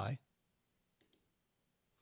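Two faint computer mouse clicks in quick succession about a second in, selecting a preset in photo-editing software; otherwise near silence.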